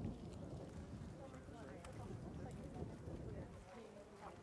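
Faint, indistinct voices talking quietly, with a few light clicks.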